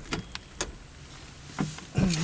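A few light clicks and knocks, then a louder thump near the end, as a person climbs into the driver's seat of a car.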